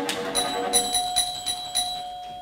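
A doorbell-type bell rings in a quick run of metallic strikes, about every half second, each ring hanging on after it. It cuts in just as cello playing and typewriter clacking stop.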